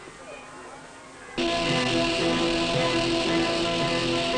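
A quiet stretch, then about a second and a half in an orchestra comes in suddenly and loudly, playing sustained chords.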